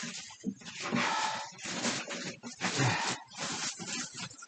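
A man breathing hard and noisily after exercise: heavy breaths, each about half a second long, roughly one a second.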